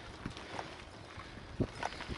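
Loaded touring bicycle rolling over a rough road, with irregular knocks and rattles from the frame and panniers; two louder knocks come near the end.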